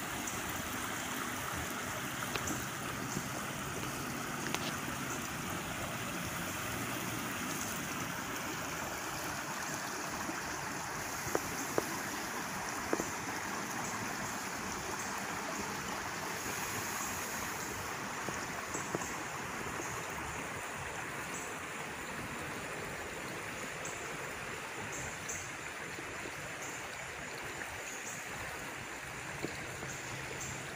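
A creek in flood after heavy rain, running high and fast: a steady rush of water that grows slightly fainter in the second half. A few sharp clicks come about midway.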